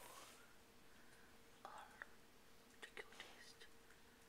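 Near silence: a faint whispered voice and a few short, soft clicks, over a faint steady hum.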